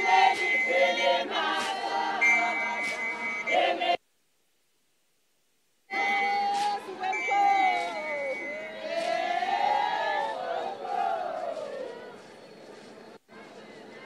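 A large group of women singing and chanting a traditional song, with sustained high shrill notes over the voices. The sound cuts out completely for about two seconds, then comes back with many overlapping long falling calls that fade to a low background by about twelve seconds in.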